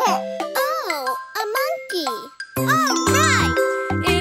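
Cartoon toddler's voice making wordless rising-and-falling sounds over children's song music with jingling chimes; a low bass beat comes in about two and a half seconds in.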